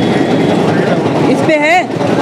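Busy street background of traffic and crowd chatter, with a short wavering call about one and a half seconds in.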